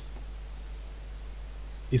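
Two light computer-mouse clicks close together about half a second in, over a low steady hum. A man's voice starts again near the end.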